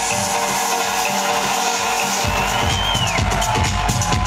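Electro house music played loud through a nightclub sound system, heard from the dance floor. The bass is cut for the first two seconds, then the kick drum and bass come back in about halfway through. A short high tone slides up and falls away just before the three-second mark.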